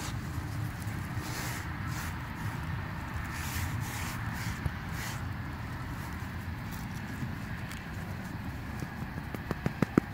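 A hand rubbing flour over the carved face of a fallen headstone: soft brushing strokes over a low, steady rumble, with a few sharp clicks near the end.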